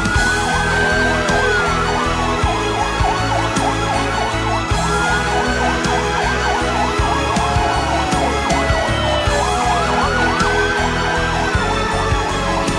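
Emergency sirens of police and fire vehicles: a slow wail rising and falling about every five seconds, with faster yelping sirens layered over it. Background music with a steady beat runs underneath.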